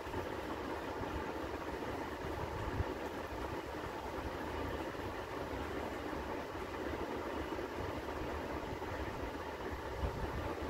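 Steady mechanical background hum with a faint steady whine in it, and one small tap about three seconds in.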